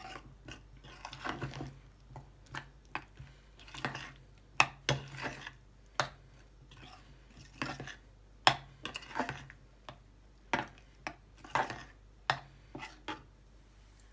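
Metal spoon stirring a thick sour-cream and mayonnaise sauce in a small bowl, with irregular sharp clinks against the bowl, the loudest about halfway through. Mixed in are the mouth sounds of chewing as the sauce is tasted.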